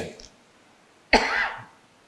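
A single short cough from a man, picked up close on a handheld microphone, about a second in.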